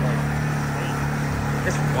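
Side-by-side UTV engine running at steady revs, the machine bottomed out and stuck in a deep mud hole.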